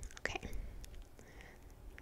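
A woman whispers 'okay' close to the microphone, then pauses, with a few faint small clicks in the quiet.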